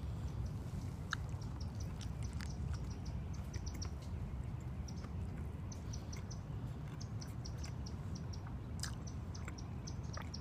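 Quick runs of short, high chirps from a small bird, repeating every second or two over a steady low outdoor rumble, with a few faint clicks of chewing.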